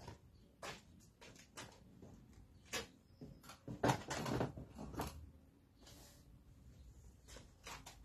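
Quiet handling and movement noise: irregular knocks, clicks and scuffs, busiest around four seconds in, over a low rumble.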